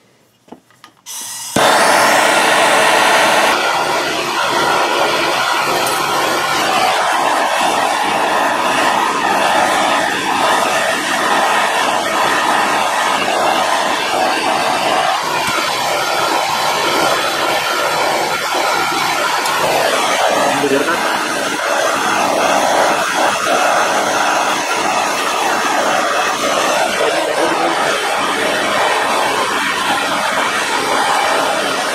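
Handheld gas torch lit about a second and a half in, then burning with a steady loud hiss while it heats a steel blade joint for soldering. It is loudest for the first couple of seconds after lighting.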